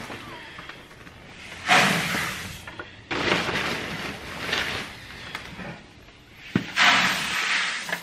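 Green plastic bucket scooping feed pellets out of a woven bulk bag, heard as three bursts of rattling pellets and rustling bag fabric, one about two seconds in, one a little past three seconds, and one near the end.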